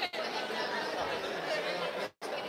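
Crowd chatter: many people talking at once in a large lobby.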